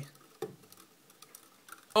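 Near silence with a few faint small clicks, one a little louder about half a second in.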